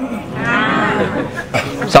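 A man's voice holding one long, wavering, drawn-out vocal sound for about a second, followed by a few quick spoken syllables.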